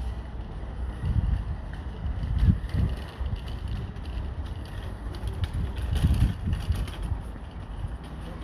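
Wind buffeting a phone microphone outdoors, a low rumble that swells in gusts about a second in, about two and a half seconds in and about six seconds in.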